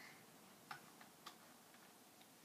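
A few faint taps on computer keyboard keys, about a third of a second apart, against near silence.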